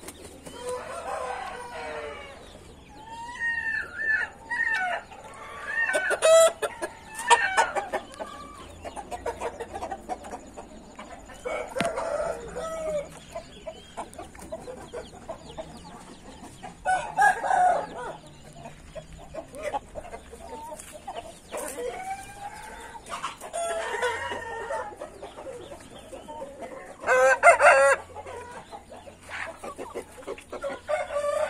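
Many roosters and young cockerels crowing one after another and overlapping, some close and some farther off. The loudest crows come about six, seventeen and twenty-seven seconds in.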